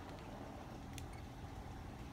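Quiet room tone: a faint steady low hum, with one faint click about a second in.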